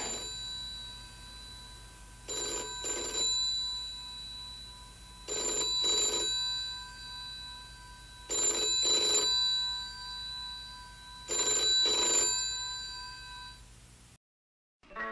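A telephone ringing in the British double-ring pattern: four pairs of rings, each pair about three seconds after the last.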